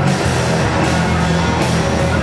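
Live rock band playing loud on electric guitar, bass guitar and drum kit, with a steady beat of cymbal strokes about every 0.4 seconds.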